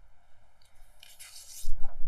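Quiet room tone with a faint rustle, then a loud, low, muffled thump near the end.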